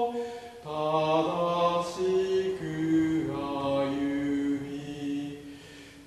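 Voices singing a hymn in parts. One phrase starts after a short breath about half a second in and fades away near the end.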